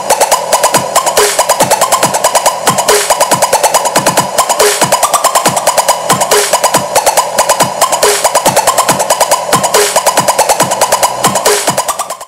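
Electronic dance music with a fast, steady beat played loud through a homemade PVC-tube Bluetooth speaker with 3-inch Aiyima midrange drivers, tweeters and passive radiators.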